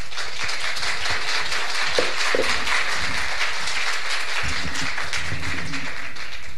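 Audience applauding: many hands clapping in a dense, even patter.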